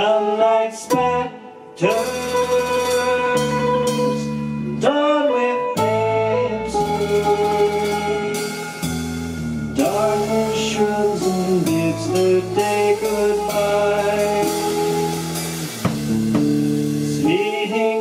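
A live rock band playing with electric guitars and drums, a male lead vocal singing over them.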